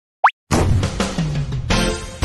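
Intro jingle: a quick pop rising in pitch, then a short burst of music with sustained notes and a few sharp percussive hits starting about half a second in.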